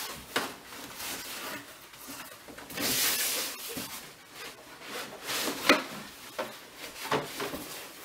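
A cardboard box being opened and handled: the lid slides off and the cardboard flaps rub and scrape, loudest about three seconds in, with a few sharp taps as the box is moved on the table.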